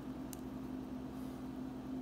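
Steady low hum with a constant pitch and a faint hiss, unchanging through the pause.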